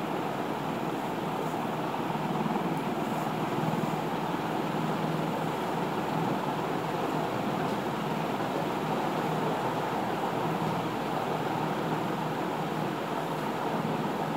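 Steady background noise, an even rush with no distinct events, of a kind typical of a running fan, air conditioner or distant traffic.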